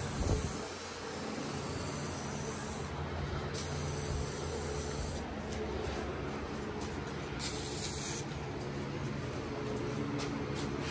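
Aerosol can of adhesion promoter spraying onto a fiberglass bumper in three bursts: a long one of about three seconds, a shorter one just after, and a brief one near the end. A thump sounds right at the start, over a steady low hum.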